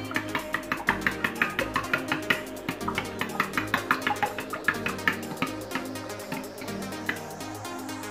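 Metal spoon clinking quickly and repeatedly against a glass bowl as it beats cake batter, over background guitar music.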